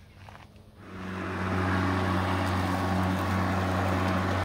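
A red battery-powered walk-behind lawn mower spins up about a second in, then runs with a steady hum while cutting grass.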